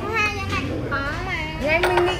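Children's high-pitched voices talking and calling out during a game, with a short knock near the end.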